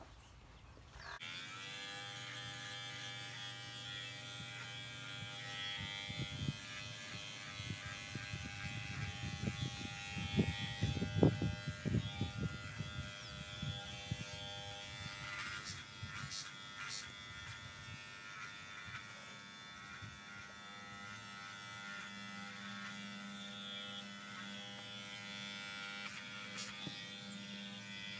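Electric horse clippers switched on about a second in and running with a steady buzz while clipping a pony's face. A few low thumps of handling come partway through.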